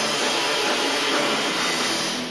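Live rock band with electric guitars, bass and drums playing loud, heard as a dense, steady wash of distorted noise.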